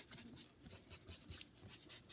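A felt-tip marker drawing quick, short strokes on paper, heard as a faint series of scratchy strokes.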